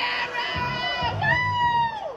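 A recorded song with a pulsing bass beat playing for a lip sync dance, while a crowd of teenagers shouts and cheers over it; long, high held voice notes rise and fall twice.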